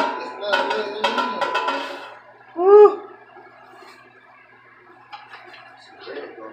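Paper bag of live blue crabs with a plastic liner rustling and crinkling as it is handled over a steaming stockpot. A short cry whose pitch rises then falls comes about two and a half seconds in.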